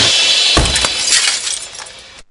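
Sound effect of glass shattering: the crash dies away over about two seconds, with a few separate tinkles of falling pieces.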